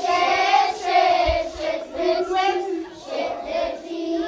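A group of voices singing a slow melody in two parts, with long held notes.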